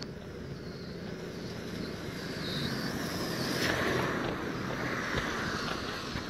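A vehicle passing on a nearby road: its noise swells to a peak a little past the middle, then fades.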